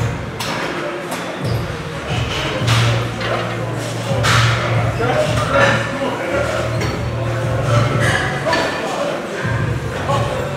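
Gym ambience: background music with a steady bass line and people talking in a large busy room, with occasional thuds.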